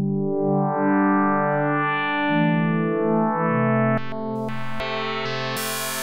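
Dexed, a software emulation of the Yamaha DX-7 FM synthesizer, playing the 'Sahara' patch as a slow run of sustained keyboard notes. About four seconds in, as the FM algorithm is switched from 10 to 18, a few clicks break in and the tone turns brighter and harsher.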